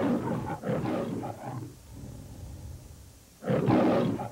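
The MGM logo lion roaring. One roar trails off in the first second and a half, a quieter low stretch follows, and a second loud roar begins near the end.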